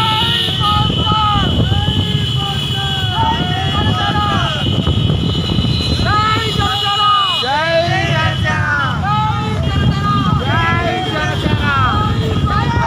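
A column of motorcycles riding together, with the low rumble of their engines, and voices calling and shouting over it again and again.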